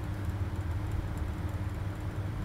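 Steady low hum with a faint steady tone above it, unbroken and without events: background room noise.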